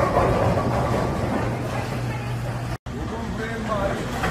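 Bowling alley din: a steady low rumble of balls rolling on the lanes and the pin machinery, with people talking over it. The sound drops out for an instant about three-quarters of the way through.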